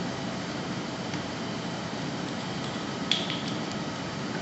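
A few light clicks and taps of plastic tubing and connectors being handled at a perfusion reservoir's ports: a faint one about a second in and a quick run of three or four about three seconds in, the first the loudest. Under them runs a steady room hum.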